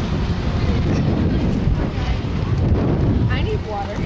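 Wind buffeting the camcorder microphone: a loud, ragged low rumble, with faint voices near the end.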